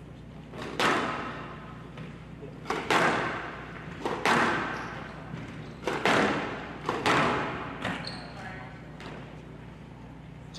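A squash ball struck hard by rackets and hitting the walls of a glass court during a rally: sharp cracks, often in quick pairs, about every one to one and a half seconds, each ringing out in the large hall.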